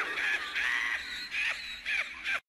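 Animated hyena character's cackling laugh, a run of short high-pitched bursts.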